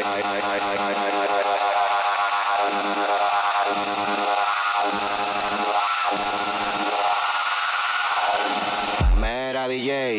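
Dance music from a live DJ set, mixed on a controller. The deepest bass thins out about a second in and the track carries on lighter. Near the end a heavy bass hit comes in and the pitch bends downward, a transition into the next track.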